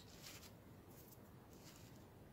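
Near silence: faint room tone with a few very soft handling noises.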